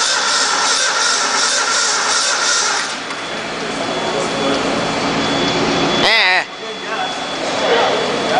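A Ford 302 V8 running on an engine stand, held up on the throttle for the first three seconds and then easing to a lower, quieter run. The engine is running without its #1 connecting-rod bearing and without the second compression ring on #3.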